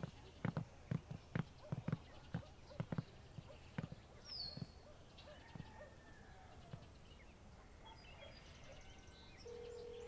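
Footsteps on hollow wooden stairs and boards, about three steps a second, stopping about four seconds in. Near the end a phone's steady ringback tone starts as a call is placed.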